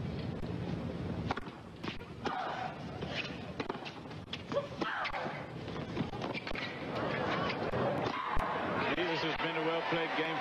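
Tennis ball being struck by racquets and bouncing on a hard court during a rally, sharp knocks a second or more apart, with voices from the crowd or broadcast.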